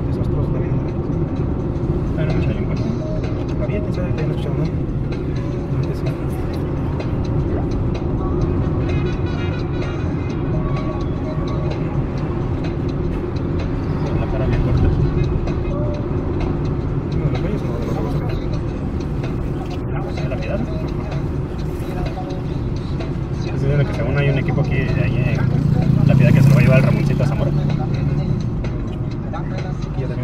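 Steady engine and road noise inside a moving car, with music and voices playing over it, louder about three-quarters of the way through.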